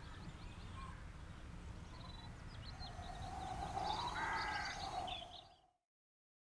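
Faint outdoor ambience: low background noise with small bird chirps, and a louder drawn-out sound swelling from about three seconds in. It all fades to silence about five and a half seconds in.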